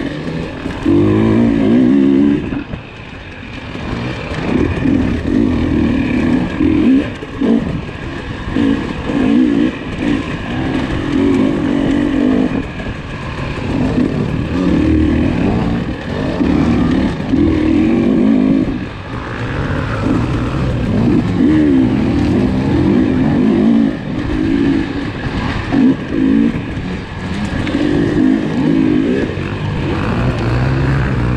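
KTM 300 XC two-stroke dirt bike engine being ridden, revving up and dropping back again and again every second or two under constantly changing throttle.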